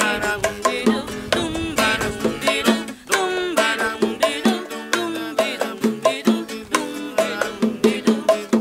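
Folk song played on a strummed acoustic guitar and hand-struck bongos in a quick, even beat, with a voice singing over them.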